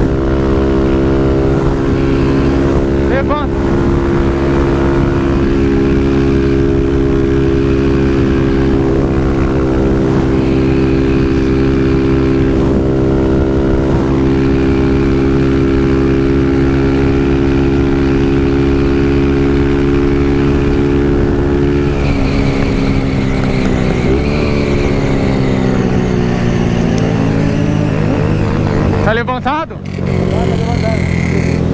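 Honda CG 160 single-cylinder motorcycle engine running at steady high revs at speed, with wind rushing over the microphone. A little over two-thirds of the way in the engine note falls as the bike slows, then holds steady at lower revs.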